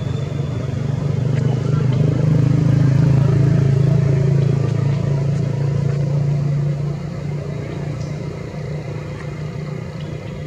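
A motor engine running steadily, growing louder over the first few seconds and dropping back about seven seconds in.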